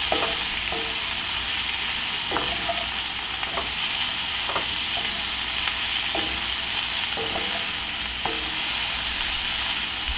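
Sliced bell pepper and onion sizzling in oil in a cast-iron skillet, steady throughout, while a wooden spoon stirs and scrapes them across the pan every second or so.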